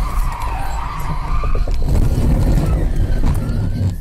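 Car crash heard from inside the dashcam car: loud rumbling, skidding and scraping with a few knocks as the car goes out of control, cutting off abruptly at the end.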